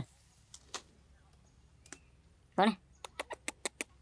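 A quick run of about seven sharp clicks in under a second near the end, with a few lone clicks before it.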